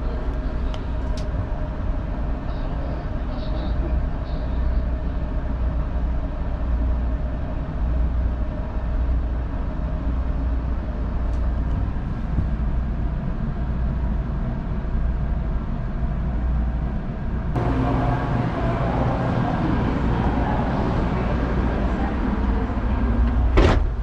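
Steady low rumble and hum inside the lavatory of an N700 series Shinkansen car, the carriage's own interior noise. About 17 seconds in it turns louder and brighter.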